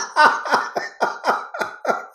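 A person laughing hard in a long run of quick 'ha' bursts, about five or six a second, slowing down toward the end.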